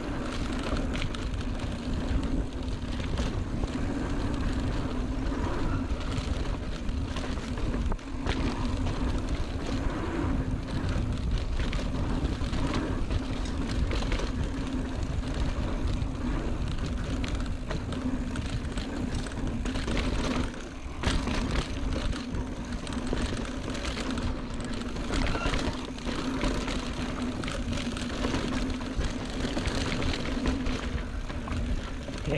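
Mountain bike riding down a dirt singletrack trail: steady wind rush on the camera microphone and tyre noise on dirt, with frequent short knocks and rattles from the bike over roots and rocks. Two brief lulls come about a third and two-thirds of the way through.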